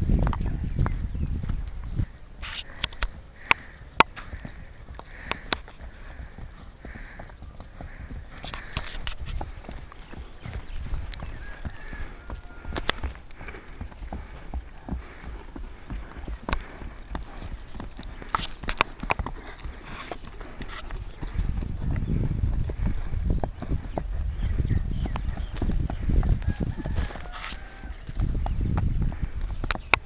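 Hoofbeats of a ridden horse moving over dry dirt ground, a running clip-clop with scattered sharper clicks. A low rumble sits under it, heaviest at the start and over the last several seconds.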